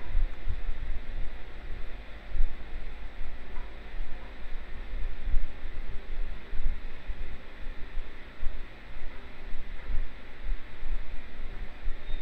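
Steady background noise: a low, uneven rumble under an even hiss, with no distinct events.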